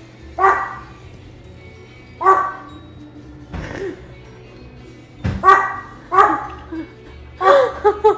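Small dog barking repeatedly in short, high-pitched yaps, about seven barks spaced irregularly, roughly one a second.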